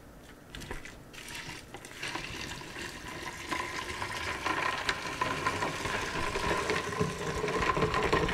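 Hot brine poured from a pot into a plastic tub of ice cubes and spices, with a few light clicks at first, then the splashing stream growing steadily louder.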